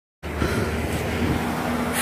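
Steady motor-vehicle noise on a street: an even low hum with a steady mid-pitched tone over it.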